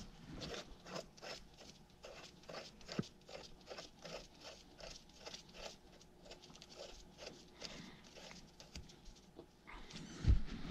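Faint, irregular small clicks and rustles of gloved hands handling metal parts on a cast-iron tractor hydraulic pump, with one sharper click about three seconds in.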